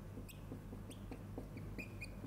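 Steady low room hum with a scatter of faint, short, high-pitched squeaks or chirps.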